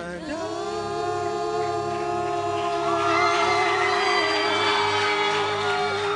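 Worship singing: a voice holds one long, steady sung note, and more voices join above it about halfway through, over a steady low accompaniment.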